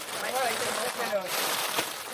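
Low background talk between women, over the rustling of plastic bags and cardboard boxes being handled and packed.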